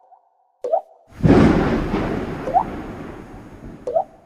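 Water-drop plop sound effects: three short plinks, each rising in pitch, spaced a second or two apart. About a second in, a sudden burst of rushing rain noise comes in and slowly fades away.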